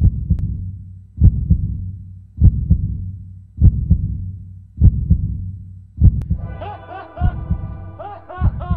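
Heartbeat sound effect: low double thumps, lub-dub, repeating slowly about every 1.2 seconds, seven beats in all. A melodic music line comes in over the beats about six and a half seconds in.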